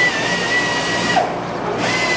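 Sunnen honing machine's spinning mandrel honing the kingpin bushing of a Datsun truck spindle as the part is stroked back and forth: a steady machine hum with a thin, high whine over it. The whine drops out briefly just past a second in, then comes back.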